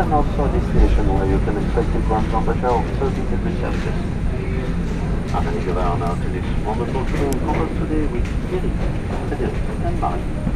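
Steady low drone from the parked airliner and gate machinery, with people talking throughout and a low thump about a second in.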